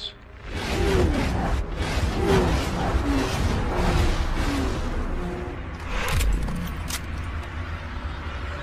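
Action-film soundtrack: dramatic music over a heavy low rumble, with sharp impacts about six and seven seconds in.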